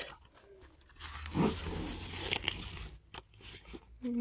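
Glossy pages of a booklet being turned by hand: a paper rustle with a couple of louder swishes, starting about a second in, then a few light clicks near the end.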